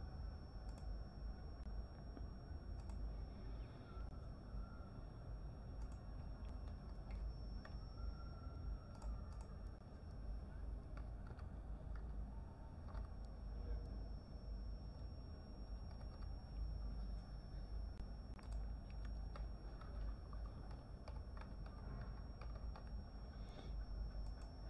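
Faint computer keyboard typing and mouse clicks: scattered short clicks over a steady low hum and a thin, steady high whine.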